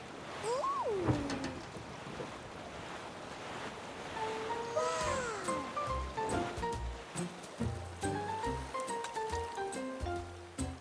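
Cartoon background music: a gliding tone that rises and then falls about a second in, then a light stepping melody from about four seconds, with a bass line coming in at around six seconds.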